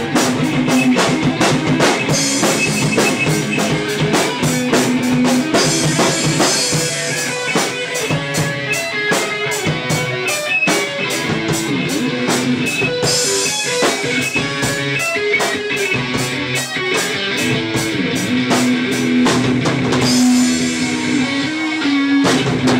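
Live rock band playing an instrumental stretch: electric guitar with held notes over a drum kit keeping a fast, steady beat.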